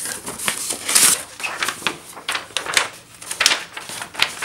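Cardboard shipping box being unpacked by hand: flaps scraping and knocking and a sheet of packing paper rustling, in an irregular run of short scrapes and taps. Two louder scrapes come about a second in and again later on.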